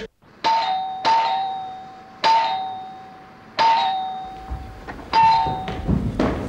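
Electric two-tone doorbell chime rung five times in a row, each ring a high note stepping down to a lower note that rings out and fades.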